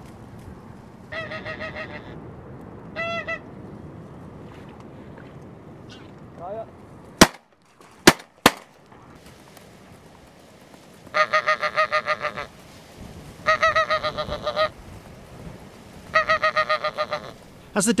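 Goose call blown in bursts of rapid honks to bring geese in to the decoys: two short series early on and three longer ones in the second half. Three sharp clicks come about halfway through.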